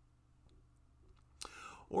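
A pause in a man's speech: faint steady low hum of room tone, then about a second and a half in a mouth click and a short breathy intake of breath just before he starts talking again.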